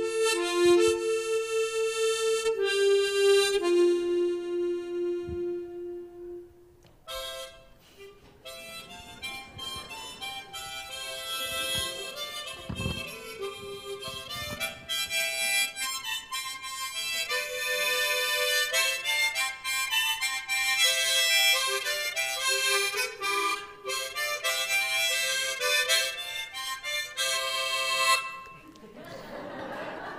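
Harmonica solo: a clear, slow melody of long held notes that stops about six seconds in, then after a short pause a harmonica played again with a fuller, busier sound of several notes at once for most of the rest, giving way to a soft hiss near the end.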